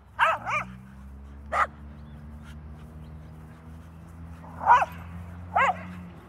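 Dogs barking during rough play: two quick barks at the start, a short sharp sound about a second and a half in, then two more single barks near the end.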